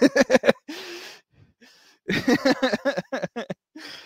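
A man laughing in two bouts of short, breathy pulses, with a gasping in-breath between them about a second in.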